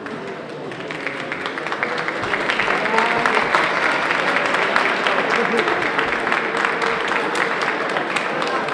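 Crowd clapping and cheering, building up over the first few seconds and staying loud, with shouting voices mixed in.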